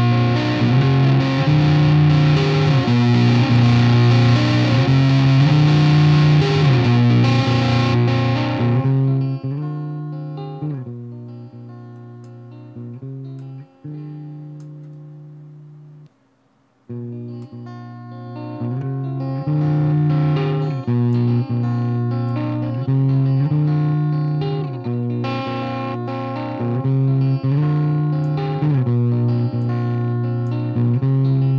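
Electric guitar played through the Poulin LeCto amp-simulator plugin on its clean, undistorted setting, with a Kefir cabinet impulse loaded: a repeating phrase of chords over a steady pulse. About nine seconds in the treble drops away and the sound darkens and fades, cuts out briefly near sixteen seconds, then returns with its brightness rising and falling as the tone knobs are turned.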